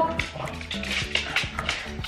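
Background music, with a pug giving short vocal sounds as it is towelled dry after a wet walk.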